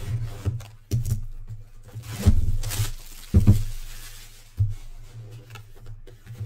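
A cardboard jersey box in plastic wrap being handled on a table: a few dull thumps about a second apart, with a crinkly rustle of the plastic about two seconds in.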